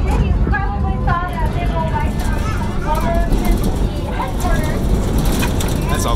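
Steady low rumble of a moving open-sided tour wagon, with wind noise on the microphone, under people's voices talking in the background.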